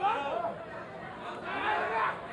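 Several people's raised voices calling out over crowd chatter, with no clear words.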